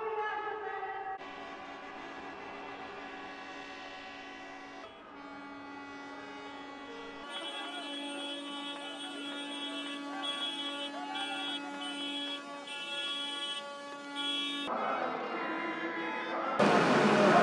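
Many tractor horns blaring together in long, overlapping sustained blasts. The mix of tones shifts every few seconds, and some of the higher horns cut in and out near the end.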